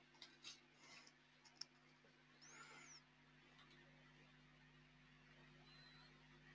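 Near silence: a faint steady hum, with a few soft keyboard clicks in the first two seconds.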